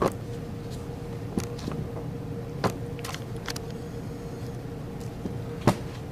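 A steady, even hum in the room, broken by several short, sharp clicks and taps. The loudest click comes near the end.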